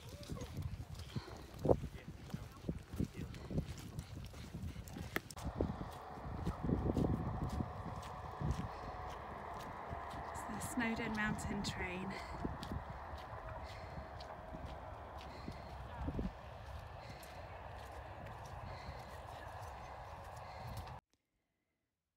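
Wind buffeting an outdoor phone microphone: low rumbling gusts with knocks for the first few seconds, then a steadier windy hiss after a cut about five seconds in. A few indistinct voices come through around the middle, and the sound cuts out to silence for the last second.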